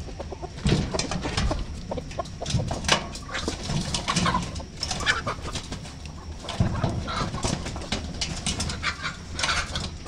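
A flock of domestic chickens clucking, many short calls overlapping all through, mixed with scattered sharp clicks and scuffles as the birds hurry out to feed.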